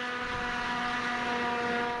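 A machine running steadily: a hum of constant pitch over a hiss.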